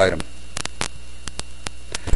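Steady electrical mains hum picked up by a cheap computer microphone, with about eight sharp, irregularly spaced clicks over it.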